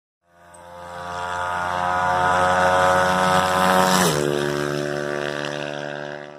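An engine-like drone in an intro sound effect: a steady hum that fades in over the first two seconds, dips in pitch about four seconds in, then carries on more quietly.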